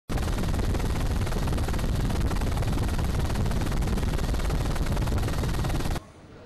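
Helicopter rotor and engine noise, loud and dense with a rapid pulsing beat.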